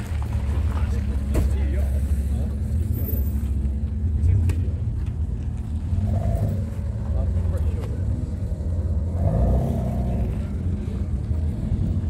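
A car engine idling with a steady low rumble, with faint voices in the background.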